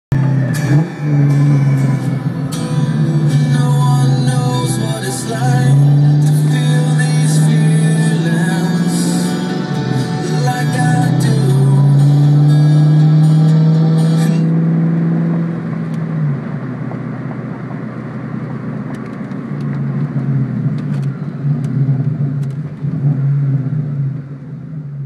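Loud music with a heavy bass line playing in a car's cabin over the car's engine while it drives; the music's crashing high parts stop about fourteen seconds in, leaving a quieter low drone.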